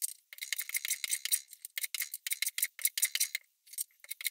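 Hand plane working cherry: three runs of quick, scratchy cutting strokes.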